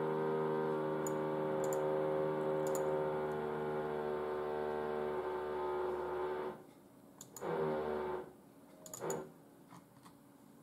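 A man's voice humming one long, steady, low note, sinking slightly in pitch, for about six and a half seconds, then two short hums near the end. A few faint clicks are heard over it.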